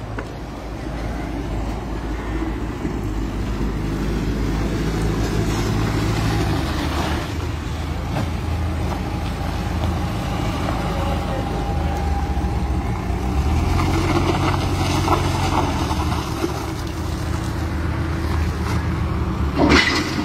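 Vehicle engine running with a steady low rumble. A brief loud noise comes right at the end.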